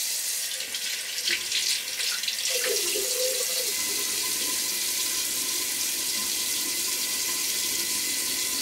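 Bathroom tap running steadily into a sink during face washing.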